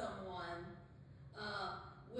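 Speech only: a voice talking in short phrases, with a brief pause in the middle.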